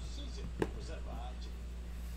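A die lands on the table with a single short, sharp click about half a second in, over a steady low electrical hum.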